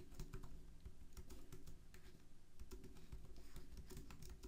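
Typing on keys: a faint, quick, irregular run of key clicks.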